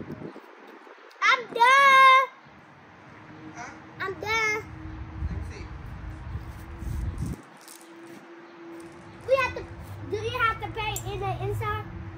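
Young girls' voices: one long, high, held vocal sound about a second in, then short snatches of child talk too unclear to transcribe, a few seconds in and again near the end.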